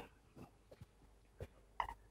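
Near silence: room tone with a steady low hum and a few faint short clicks.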